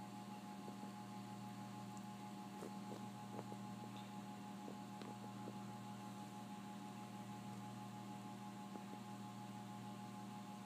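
Faint, steady electrical hum of laboratory equipment: a low drone with a couple of thin higher tones held above it, unchanging throughout, with a few faint ticks scattered through.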